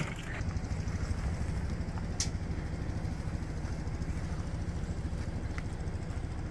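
Steady low hum of RV air conditioners running, with one short click about two seconds in.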